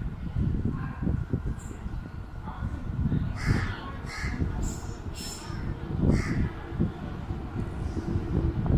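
Crows cawing, several short harsh calls bunched together in the middle, over a continuous low rumble.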